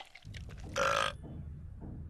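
A single short, throaty vocal sound like a burp or grunt about three-quarters of a second in, over a low steady hum.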